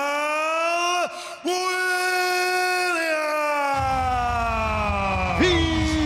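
A ring announcer's voice through the arena PA, stretching out the winner's name in long held syllables. The last syllable slides slowly down in pitch. Low bass music comes in about four seconds in.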